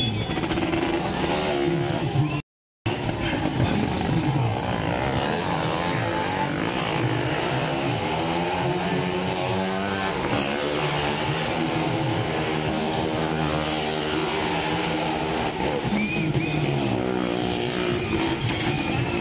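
Car engines running in a well-of-death stunt arena, with loud music playing over them. The sound cuts out completely for a moment about two and a half seconds in.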